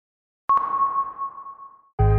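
A single ping sound effect about half a second in: a sharp attack, then one clear high tone that rings and fades away over about a second and a half.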